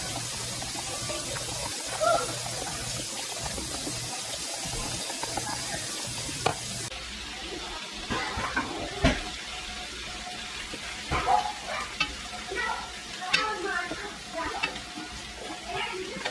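A whisk stirring pancake batter in a glass bowl. About seven seconds in the sound changes to a hot griddle on a gas stove sizzling faintly, with scattered clinks and knocks of utensils.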